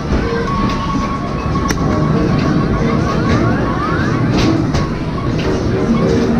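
Arcade din of electronic game sounds: a held electronic tone for about four seconds, with a run of quick rising sweeps in the middle and a few sharp clicks, over a steady low rumble of machines.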